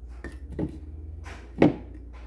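A spoon tapping and clinking as brown sugar is spooned into a pan of coconut milk: about four short knocks, the loudest near the end, over a steady low hum.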